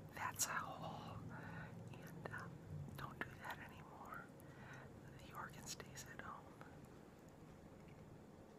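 A person whispering in short phrases, with a faint steady low hum behind.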